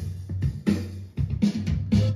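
A backing track, an audio file from a USB stick played by the Yamaha CK61 stage keyboard's Audio Trigger: music with a steady drum beat and a bass line.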